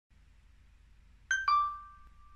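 Smartphone notification chime: a short higher note, then a lower one about 1.3 s in, the lower note ringing on and fading. It signals an incoming push notification.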